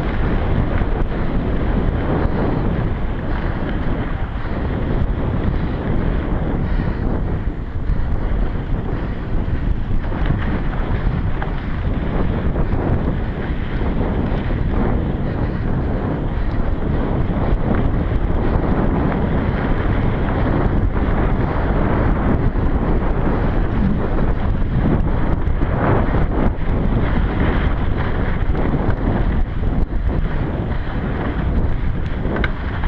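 Wind buffeting an action camera's microphone as a mountain bike rides fast along a dirt trail, over a steady rumble with small rattles from the bike and tyres on the rough ground.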